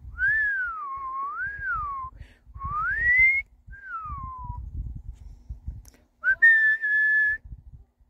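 A person whistling a short wandering tune, the pitch gliding up and down in a few phrases, then ending on one held note about a second long.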